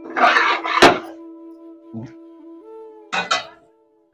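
Soft flute background music plays while a metal spatula scrapes and stirs thick curry in a steel pan, with a sharp clink against the pan about a second in and another scraping stir near the end.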